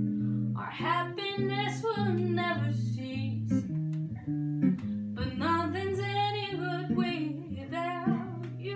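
A woman singing two phrases over an archtop electric jazz guitar that plays chords and a low bass line, with a short break in the singing around the middle.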